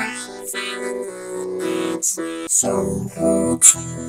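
Vocoded singing: a sung vocal driving Logic Pro X's EVOC 20 PolySynth vocoder with a harpsichord part as the carrier. It comes out as robotic, synth-like chords that step between held notes, with several hissy 's' sounds cutting through. The formant shift is being turned up as it plays.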